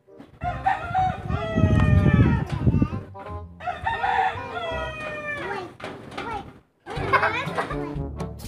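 Rooster crowing: two long crows with falling pitch, and a third beginning near the end.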